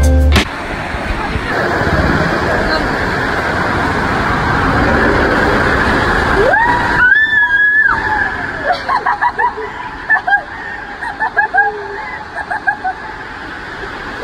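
A ride down a water slide: a steady rushing noise, then a person's scream that rises about six and a half seconds in and is held for a moment, followed by bursts of laughing and shouting.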